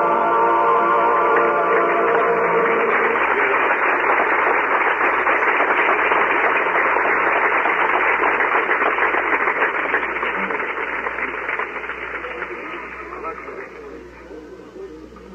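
The last chord of a band and orchestra is held and dies away about three seconds in, then a concert audience applauds, the applause thinning out near the end. The recording is muffled, with no treble.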